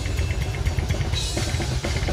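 Extreme-metal drum kit playing live: fast, even double-bass-drum strokes under cymbals, with the cymbal wash brightening about halfway through.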